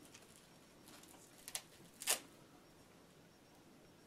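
Faint handling of small Velcro strips and pads between the fingers: two short crackles, about a second and a half and two seconds in, over quiet room tone.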